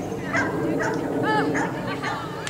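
A dog barking, about three short barks close together, over outdoor crowd background noise.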